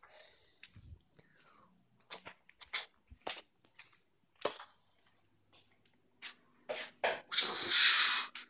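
Scattered soft knocks and rustles from a handheld phone being carried while walking. Near the end comes a louder hiss, about a second long.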